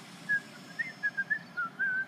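A person whistling a quick run of short notes, ending on a longer rising note.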